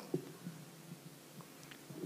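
Quiet pause between spoken phrases: a faint steady low hum from the lectern's microphone sound system, with a few faint ticks.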